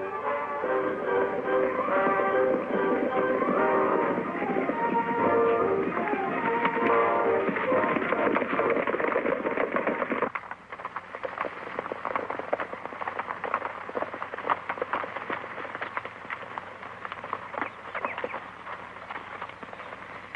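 A dramatic orchestral score plays over the many fast hoofbeats of several galloping horses. About halfway through, the music cuts off suddenly, leaving only the galloping hoofbeats, which thin out near the end as the horses slow.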